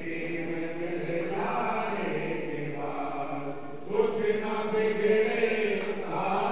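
Men chanting a devotional prayer to Sai Baba, one voice leading on a microphone, in long held notes. A new, louder phrase begins about four seconds in.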